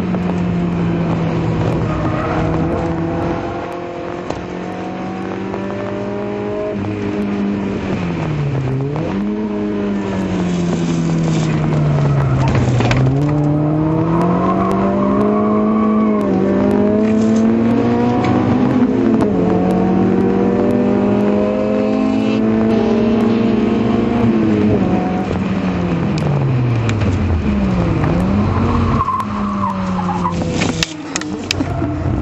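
Citroën Saxo VTS's 1.6-litre four-cylinder engine heard from inside the cabin, driven hard on track: loud and steady, with the revs dropping and climbing again several times as gears are changed.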